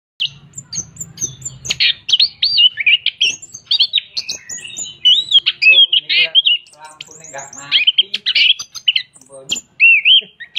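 Chestnut-capped thrush (anis kembang) singing without pause: a fast, varied stream of high whistled notes, rising and falling sweeps and trills.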